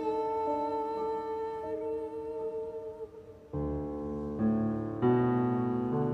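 Classical art song for mezzo-soprano and piano. Held notes fill the first half; after a brief dip, low piano chords enter about three and a half seconds in and change about once a second.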